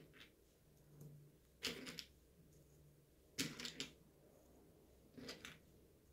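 Dried fava beans being handled and set down one at a time on a paper sheet on a table: faint clicks and taps in three short clusters, about a second and a half apart, with near silence between.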